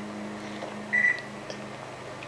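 Microwave oven running with a steady low hum, and a single short high-pitched beep about a second in.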